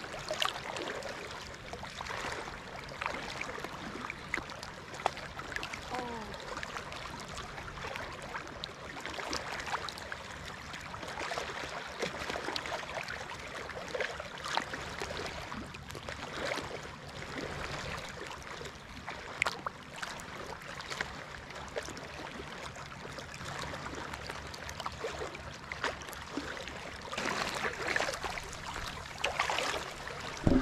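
Small waves lapping and trickling around a camera sitting at the surface of shallow sea water, with many small splashes and ticks. The splashing of feet wading through the shallows grows busier near the end as the wader comes up close.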